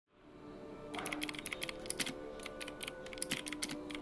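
Typing on a keyboard: a quick, irregular run of key clicks starting about a second in, over a soft, sustained musical drone.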